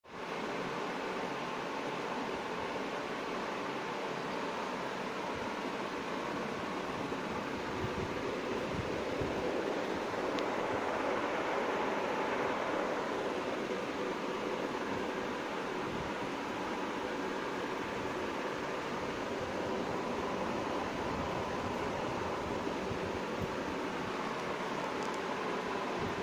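Steady rushing hiss of a running aquarium, water churning at the surface from its circulation, with no rhythm or sudden sounds.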